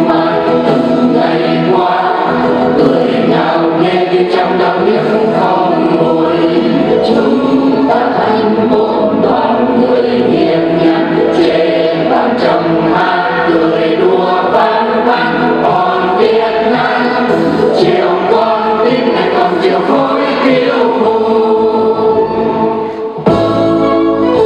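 A mixed choir of men's and women's voices singing a Vietnamese song together, with a brief dip just before the end.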